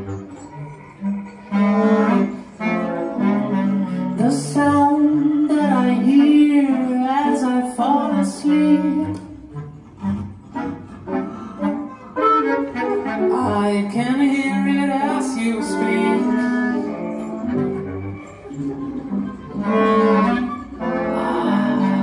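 Live jazz tentet playing: clarinets, flutes, trumpet, trombone, double bass, piano, guitar and drums, with a woman singing over the ensemble.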